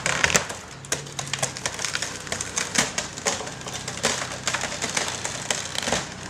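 Wooden house framing cracking and splintering in a rapid, irregular series of sharp snaps and creaks as the demolished structure is strained.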